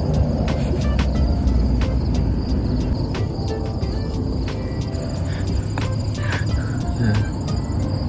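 Insects in tall grass chirring on one steady high note, with scattered sharp clicks, over a steady low rumble.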